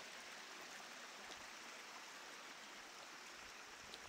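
Faint, steady rushing of a mountain stream.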